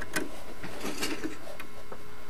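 Light clicks and scraping of a metal hand tool working at a capacitor lead among the chassis wiring of an old valve television, over a steady background hiss and hum.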